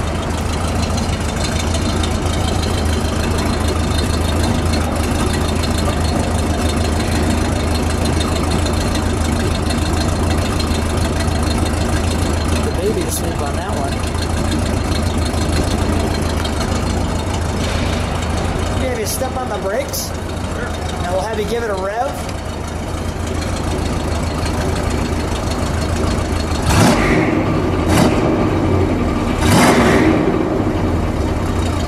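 1970 Plymouth Superbird's 440 cubic-inch V8 idling steadily through its twin exhausts. A few sharp knocks come near the end.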